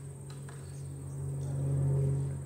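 Low, steady electrical hum from the microphone and sound system, swelling louder toward the end while its volume is being turned up. A few faint ticks sit under the hum.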